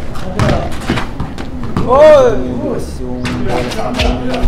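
Basketball thudding on the court and sneakers scuffing as a player backs down his defender. A loud drawn-out shout rises and falls about two seconds in.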